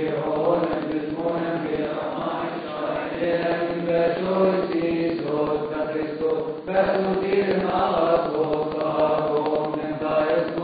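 Coptic deacons chanting a liturgical hymn together, a sustained melodic chant with a brief break about seven seconds in.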